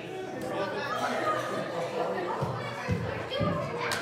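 Children's voices and chatter mixed with adult speech. A few soft thumps come in the second half, and a sharp click sounds near the end.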